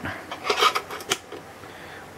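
Translucent plastic missile being pushed into a toy tank's plastic cannon barrel: a few light plastic clicks and scrapes, bunched between about half a second and a second in, followed by softer handling.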